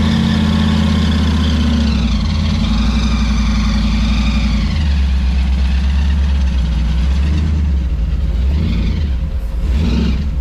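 Drag car engine running loudly at idle. Its pitch dips and comes back up a couple of seconds in.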